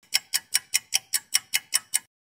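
Clock-like ticking sound effect of a quiz countdown timer: about ten short, even ticks, five a second.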